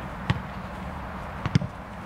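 A football struck hard about a third of a second in, then the ball thudding into goalkeeper gloves as it is caught about a second and a half in.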